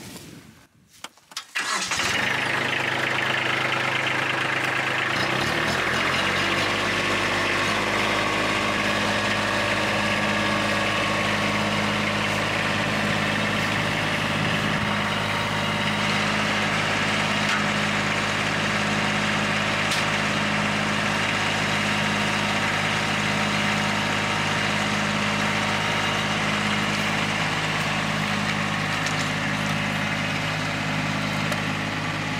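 Kubota B2601 tractor's three-cylinder diesel engine starting about two seconds in and idling briefly; its pitch steps up around six seconds in as it is throttled up, and it then runs steadily at higher speed.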